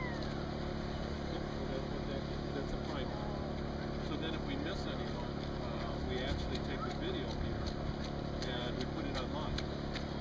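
A steady low drone of outdoor background noise with faint, indistinct voices. From about the middle, the footsteps of an approaching runner on wet pavement come in as light clicks that grow more distinct near the end.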